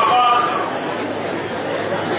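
Speech only: a man talking into a handheld microphone, amplified, with other voices in the room.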